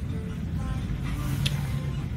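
Steady low background rumble with a single light click about one and a half seconds in.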